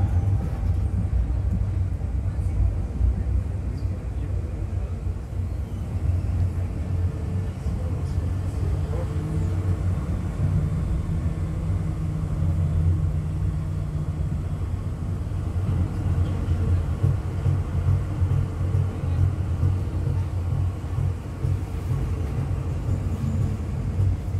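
Running noise of a moving tram heard from inside the car: a continuous low rumble from the wheels and drive, with a steady low hum standing out for a few seconds around the middle.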